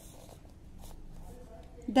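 Faint scratching of a pencil lead on paper as words on a textbook page are underlined.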